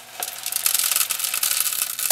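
Loose pellets of growing medium pouring out of a clear plastic container into the PVC pipe of a hydroponic strawberry tower, some spilling: a dense, crackly rattle of many small hard pieces that starts just after the beginning.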